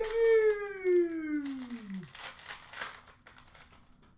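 The tail of a long, drawn-out shout of "Mario!": the held note falls in pitch and dies away about two seconds in. Under it, trading cards are rustled and crinkled in the hands until just before the end.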